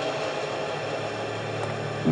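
Steady, hissing drone of dramatic background score, with a faint low hum underneath, held at an even level.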